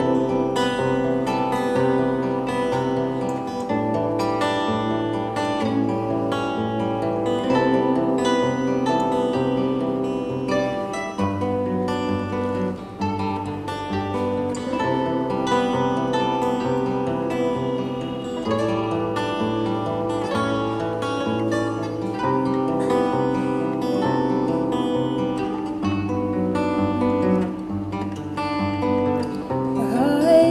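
Two acoustic guitars playing an indie-folk instrumental passage: strummed and picked chords over a steady, repeating bass line.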